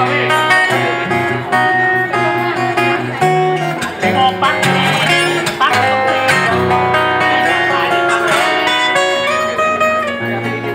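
Maton EBG808TE steel-string acoustic guitar played solo fingerstyle: quick treble melody notes over a moving thumbed bass line, with crisp percussive attacks on the strings.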